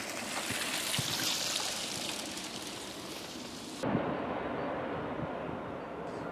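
Outdoor ambience: a steady hiss that changes abruptly about four seconds in to a duller, lower rumble with a few faint knocks.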